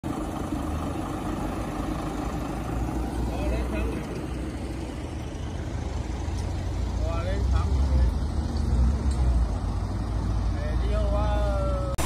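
A steady low rumble of vehicle engines running, with people's voices talking faintly now and then in the background.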